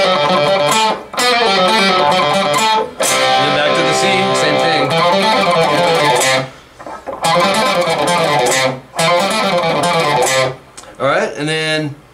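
Schecter electric guitar playing fast single-note country fiddle-style runs, alternate-picked rather than pulled off. It plays in several phrases with short breaks between them.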